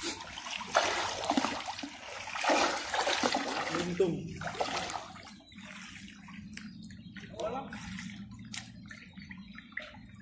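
River water sloshing and splashing close to the microphone in uneven washes for the first four seconds or so, where a man has just dived under to feel for carp. It then settles to quieter lapping with scattered small clicks and a low steady hum.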